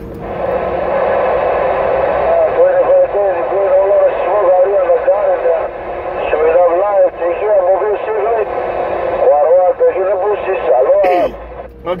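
Another station's voice coming in over a Uniden Grant XL CB radio's speaker: narrow, tinny radio speech over a steady static hiss. It breaks off about a second before the end, when the receiving operator laughs.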